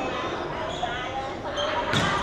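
Indoor volleyball rally: court shoes squeaking on the floor and the ball being struck, with a sharp smack of a spike just before the end.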